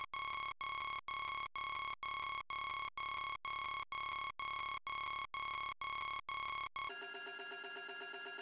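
Electronic alarm beeping: one steady high tone cut into even beeps about twice a second. About seven seconds in it gives way to a quieter, busier electronic sound.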